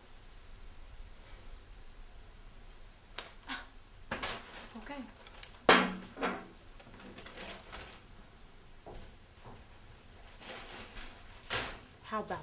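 A few scattered knocks and clatters of household objects being handled, like kitchen clatter, the loudest about six seconds in. Brief muffled vocal sounds come between them.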